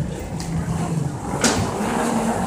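Steady low rumble of background noise with a faint hum, and one sharp click about one and a half seconds in.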